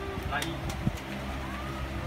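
A few short taps and clicks of cards being handled on a playmat, over a steady low hum and background voices.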